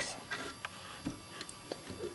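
A few faint, irregular clicks of plastic Lego pieces being handled.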